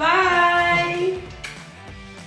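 A woman's high voice calls out one long, sing-song farewell that rises at the start and holds for about a second. Quieter music follows.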